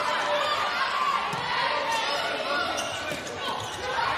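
Crowd noise in an indoor volleyball arena during a rally, with a few sharp slaps of the ball being played.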